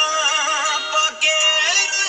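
Punjabi song playing: a male voice singing wavering, ornamented lines over sustained instrumental tones.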